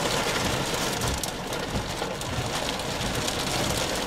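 Wind-driven rain pelting a vehicle's windshield and body, a steady rushing noise heard from inside the cab.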